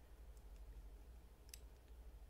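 Near silence: room tone with a low hum and two faint, brief clicks, the clearer one about three-quarters of the way through.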